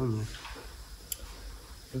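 The end of a man's words, then quiet room tone with a single short, sharp click about a second in.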